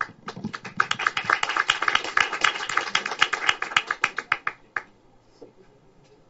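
Applause from a small audience: many separate hand claps that thicken and then die away after about four and a half seconds.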